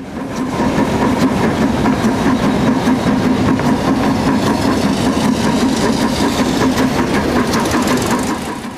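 Narrow-gauge train under way, heard through an open carriage window: a loud, steady engine drone over running noise. It comes up in the first half second and drops away near the end.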